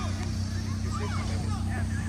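Distant children's shouts and calls, short and scattered, over a steady low hum.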